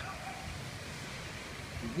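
Faint, steady hiss of outdoor beach ambience with the low wash of distant surf.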